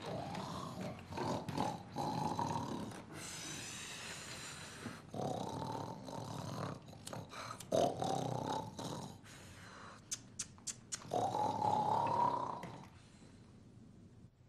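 A person snoring: four long snores a few seconds apart, with a high whistling breath between the first two. A few short light clicks come between the third and fourth snore.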